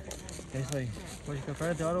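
Men's voices talking and calling out across an open cricket ground; no other clear sound stands out.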